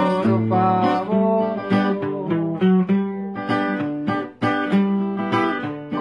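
Acoustic guitar played solo, with no singing: a picked melody over bass notes, the strings struck in a steady rhythm of a couple of attacks a second, with one brief break a little after four seconds in.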